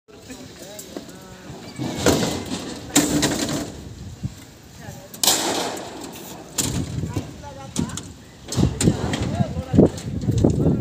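People's voices talking in the background, broken by several short, loud noisy bursts about a second or two apart.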